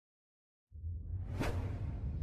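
After a moment of silence, a deep low rumble starts, with a sharp whoosh sweeping through it about halfway. This is the sound effect of an animated logo intro.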